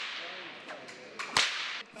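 A whip cracking twice: one sharp crack about one and a half seconds in, and the echo of another crack just before it, each ringing on in a large hall.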